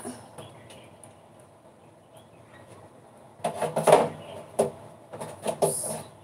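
A few quiet seconds, then from about three and a half seconds in a series of clattering metallic knocks and rattles as a perforated metal range-hood grease filter is pushed up into the hood's frame.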